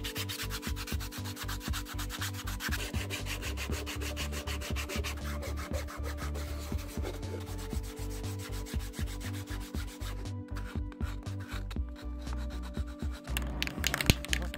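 120-grit sandpaper rubbed by hand over a 3D-printed PLA hemisphere in quick, repeated back-and-forth strokes, scratching down the printed layer lines. The strokes break off briefly a few times near the end.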